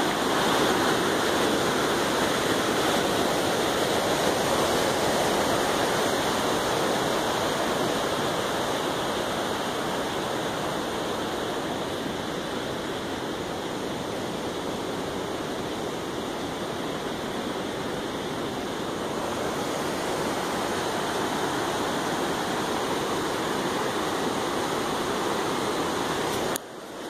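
Fast, heavy floodwater rushing down a steep concrete drainage spillway as a steady, loud wash of water noise, easing slightly midway.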